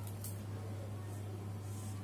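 Faint scratching of a marker writing on a whiteboard over a steady low electrical hum.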